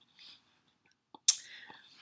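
A sudden, sharp breath about a second in, trailing off into a breathy hiss, with faint mouth noise before it.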